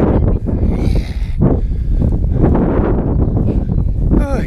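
Wind rumbling on the camera microphone, with a walker's heavy, out-of-breath breathing from a steep uphill climb.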